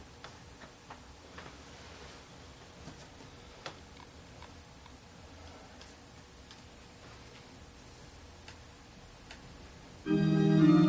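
Faint steady hiss with scattered soft clicks at irregular intervals, a few close together near the start and sparser later.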